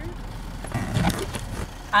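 Steady low rumble of a car interior, with a short burst of rustling and bumping handling noise around the middle.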